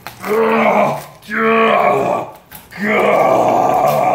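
Three loud, drawn-out vocal groans from a person, each about a second long, while a gar's flesh is being ripped apart by hand.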